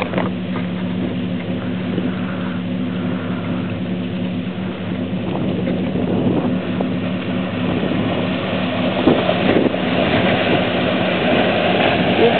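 Jeep Grand Cherokee WJ engine running steadily as the SUV drives through a muddy water hole. Water splashing grows louder toward the end as it pushes into the deeper water.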